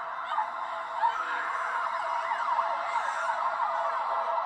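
An eerie sound effect from a TV drama's soundtrack: several warbling tones overlap, each sliding quickly up and down in pitch, siren-like.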